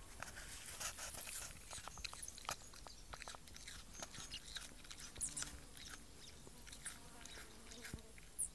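Tasmanian pademelon chewing a piece of apple: faint, irregular crunching clicks, thickest in the first few seconds.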